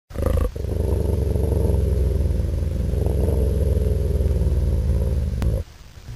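A deep, rough animal growl played as an intro sound effect. A short burst opens it, then the growl is held for about five seconds and cuts off shortly before the end.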